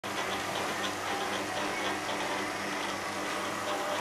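Small submersible DC water pumps running with a steady hum while water hisses out of the spray nozzles.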